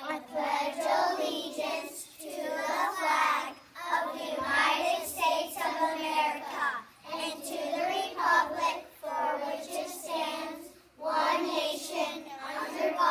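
A group of young children reciting the Pledge of Allegiance in unison. They chant it phrase by phrase, with short pauses between phrases.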